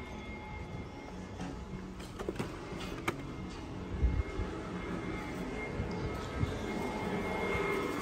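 Shop-floor background noise: a steady low rumble with a thin, steady high tone. A sharp click comes about three seconds in and a dull thump about four seconds in.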